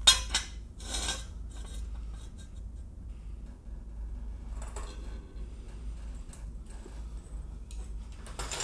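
Steel jack stand set down and slid into place under a car's jack point: a sharp metal clank at the start, a scrape about a second in, then a few lighter clinks, over a steady low hum.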